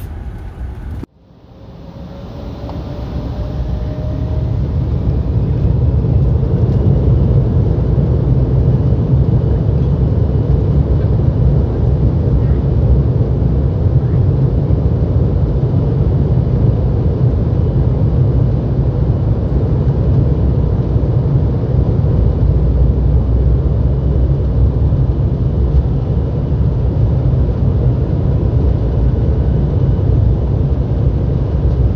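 Jet airliner engines and rumble heard from inside the cabin by the wing. Just after a brief cut, the noise builds over a few seconds with a rising whine, then holds as a loud, steady, deep rumble, as on a takeoff roll.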